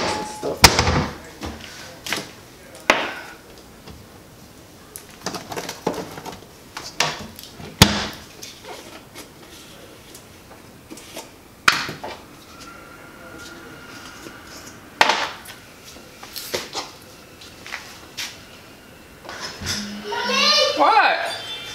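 Small glass spice jars and their lids clinking and knocking on a glass-top stove in scattered sharp taps as the jars are being refilled with spices.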